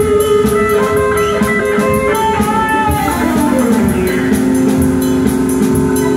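Live rock band playing loudly: electric guitar lead lines with long held notes, one sliding down in pitch about three seconds in, over a driving beat of drums and cymbals.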